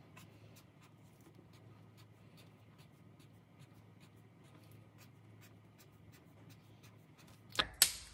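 Faint scratching of a felt-tip marker colouring in on paper, in many short strokes. Two louder clicks come near the end.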